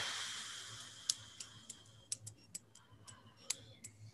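Faint, irregular small clicks and ticks over a soft hiss that fades away in the first two seconds, with a low electrical hum underneath.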